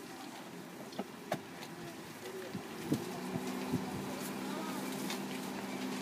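A steady low engine hum sets in about three seconds in and holds at one pitch, with faint distant voices and a few scattered clicks beneath it.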